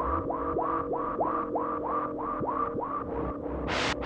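TTSH ARP 2600 clone synthesizer playing a repeating run of short notes, about three a second, each starting with a quick upward pitch swoop. Near the end the pitched notes give way to rhythmic bursts of hiss-like noise at the same pace.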